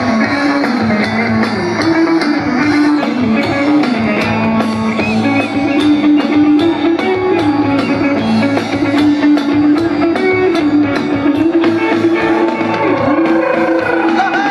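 Live rock band played loud through a large outdoor PA: electric guitars carry a melody that steps from note to note over a drum kit keeping a steady beat.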